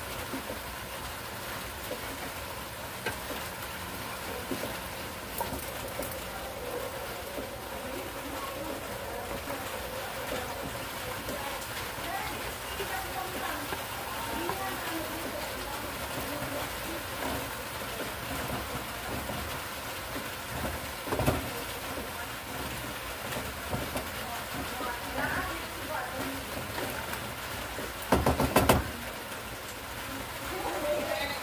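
Bottle gourd, carrots and pork sizzling in a frying pan, a steady hiss. There is a single knock about two-thirds of the way through and a short burst of clattering near the end, like a utensil against the pan.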